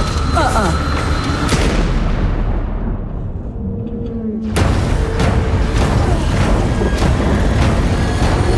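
Dramatic trailer music with booming hits. About two and a half seconds in, the sound dulls and muffles as the high end drains away. At about four and a half seconds a sudden loud boom lands, followed by dense music and effects.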